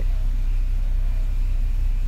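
A steady, loud low hum with no other distinct sound.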